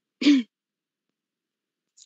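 A person clearing their throat once, briefly, a moment in, heard over a video-call connection.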